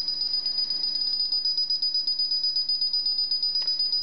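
Paradox K641 alarm keypad's buzzer beeping high and rapid during the exit delay, the countdown after the EVO192 panel is armed.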